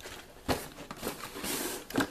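Paper and cardboard packaging being handled as the box is opened and its contents pulled out: a light knock about half a second in, then a rustle of paper sliding.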